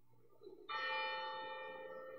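A bell struck once, about two-thirds of a second in. It rings on with several clear tones and slowly fades.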